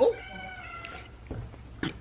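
A cat meowing once: a drawn-out call of under a second that falls slightly in pitch, followed by two soft knocks near the end.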